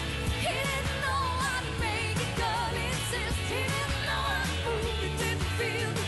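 Upbeat pop song with singing over a steady bass line and drums.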